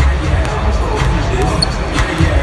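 Basketballs bouncing on a hardwood court, with a few sharp dribble strikes heard, over loud arena music with a heavy beat and the chatter of people in the arena.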